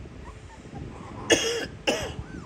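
A woman coughs twice, about a second and a half in and again just before the end.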